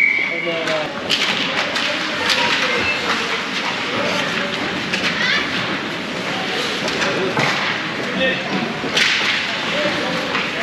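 Youth ice hockey play in an indoor rink: skate blades scraping, and sticks and puck clacking on the ice and boards in many short, sharp knocks, under shouting voices from players and spectators.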